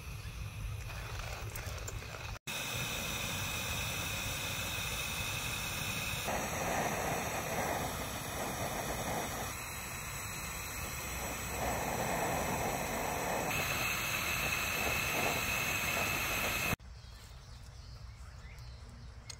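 Portable butane camping stove burner hissing steadily under a stainless gooseneck kettle as the water heats. The hiss starts abruptly about two seconds in and cuts off near the end.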